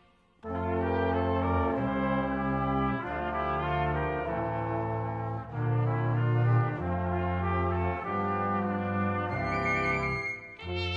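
Cobla ensemble music led by brass, playing held notes and changing chords, entering after a brief silence about half a second in.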